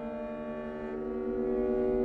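String quartet of two violins, viola and cello holding long bowed notes together as a steady sustained chord, some of the upper notes shifting about a second in.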